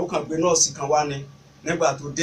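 Speech only: a man talking, with a short pause near the end.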